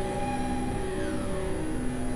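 Dense, layered experimental electronic music: several held synth-like tones shifting in pitch over a noisy drone, with a faint falling glide about a second in.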